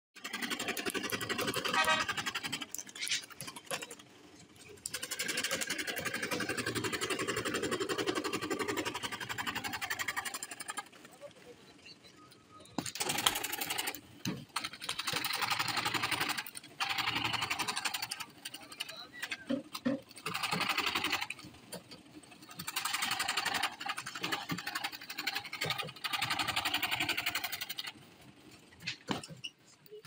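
Table-mounted reciprocating saw (chapaka) running and cutting fibreboard, in repeated stretches of a few seconds each with quieter pauses between.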